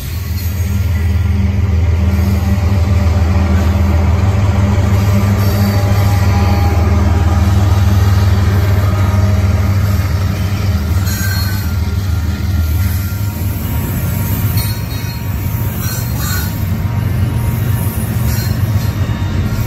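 Double-stack intermodal freight train rolling past at close range: a loud, steady low rumble of the well cars on the rails.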